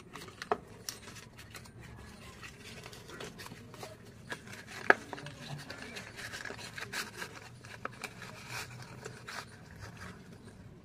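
A small paperboard box of slate pencils being opened by hand: cardboard rubbing and scraping as the flap is pried open, with scattered small clicks and one sharp snap about five seconds in.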